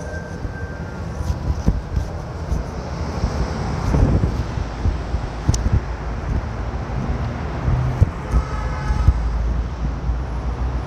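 Steady low rumble of wind buffeting a phone microphone over outdoor city noise, with a few soft knocks.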